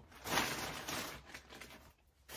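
Plastic carrier bag rustling as hands rummage inside it, loudest in the first second and then fading away.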